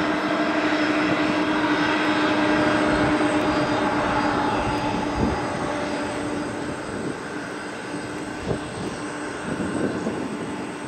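Jet airliner engines running, a steady loud rush with a constant hum through it, slowly fading away.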